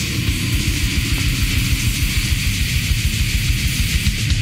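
Brutal death metal recording: heavily distorted guitar riffing over fast, dense drumming, played continuously.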